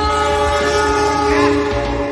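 Diesel locomotive's horn sounding one steady multi-note chord for nearly two seconds; it starts abruptly.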